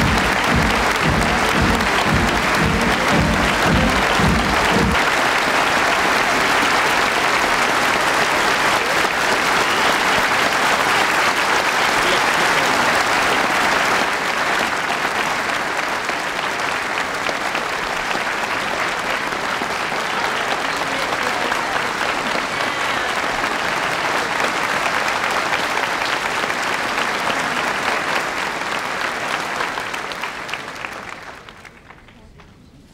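A large crowd applauding steadily, with a low rhythmic pulse underneath for about the first five seconds. The clapping eases a little about halfway through.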